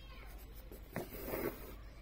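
A click about a second in, then a short scratchy rasp of embroidery floss being drawn through coarse cotton canvas with a needle.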